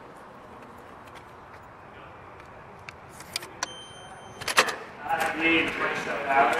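Card-access entrance door: a few clicks, then a steady high beep about a second long from the lock, then a loud clunk of the door hardware as the door opens.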